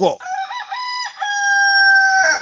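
A rooster crowing: a few short notes, then one long held note that sags slightly in pitch at the end.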